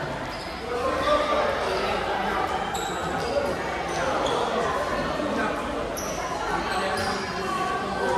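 Many children's voices chattering and calling over one another in a large, echoing gym, with volleyballs being hit and bouncing on the court floor now and then.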